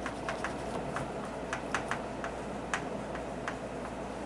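Chalk writing on a blackboard: a run of sharp, irregular taps and clicks, about three or four a second, as the letters are formed.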